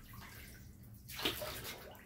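Water dripping and splashing off a wet, freshly dyed skein of yarn into a steel dye pan. It is faint, with a louder splash a little over a second in.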